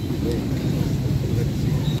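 Steady low rumble of open-air background noise with faint, indistinct voices.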